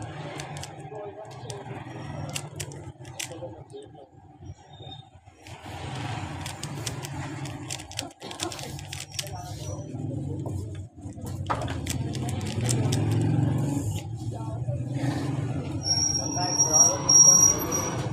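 Indistinct voices over a steady low hum, with short light clicks of a plastic 3x3 Rubik's cube being twisted by hand, most often in the first few seconds.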